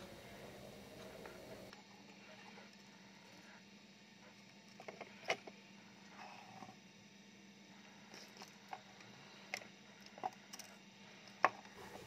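Handling noise from a radio circuit board and its metal chassis: a handful of faint, sharp clicks and taps, the loudest about five seconds in, over a low steady hum.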